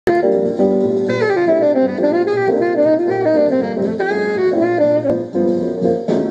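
Jazz recording: a saxophone plays a winding melodic line, note after note, over lower accompaniment.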